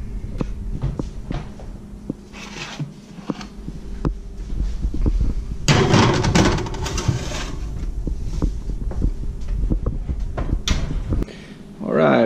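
Metal sheet pan pushed onto a wire oven rack, a short clattering rattle about halfway through, amid small handling clicks and knocks; a sharp clack near the end as the oven door is shut.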